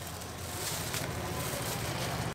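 A steady low hum of a small engine running, under a faint even hiss of background noise.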